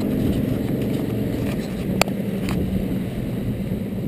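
Evinrude 135 H.O. E-TEC two-stroke outboard running steadily under way, with water rushing along the hull. A sharp click comes about two seconds in, and a fainter one half a second later.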